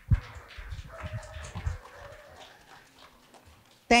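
Handling noise on a microphone: a sharp knock, then about two seconds of low, muffled thumps and rustling that die away.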